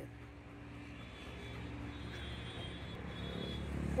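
Low, steady rumble of a motor vehicle engine running, growing gradually louder over the few seconds.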